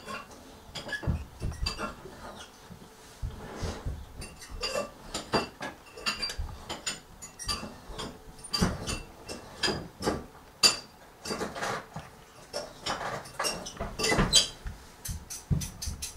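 Metal cutlery and dishes clinking and knocking irregularly as a fork is fetched and handed over, a long run of sharp clinks with a few louder ones in the second half.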